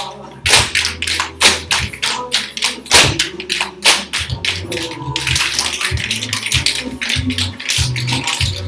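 Dancers' tap shoes striking a hard studio floor in quick, uneven taps and clicks, the loudest about half a second, one and a half and three seconds in, over a recorded song with a steady bass.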